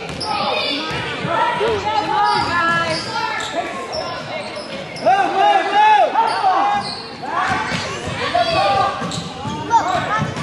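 A basketball being dribbled on a hardwood gym floor, with voices calling out and echoing around the gym; the loudest shout comes about five seconds in.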